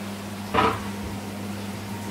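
Steady kitchen appliance hum, with one short clink about half a second in as the rice cooker's glass lid is lifted off the cooked rice.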